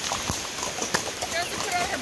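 Horses' hooves clip-clopping on a wet gravel road, an uneven run of hoof strikes from more than one horse.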